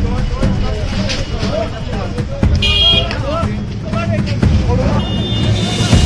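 A crowd of men talking and shouting over one another in a crowded street. A brief high, steady tone sounds about two and a half seconds in and returns near the end.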